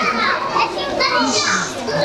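Many children's voices chattering and calling out together in a large hall; about a second in, one child says "ana" ("I am").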